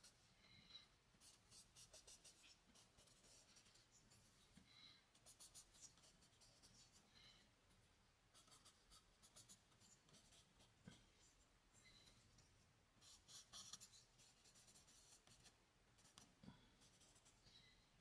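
Charcoal stick scratching faintly across drawing paper in several runs of quick back-and-forth strokes, with pauses between them.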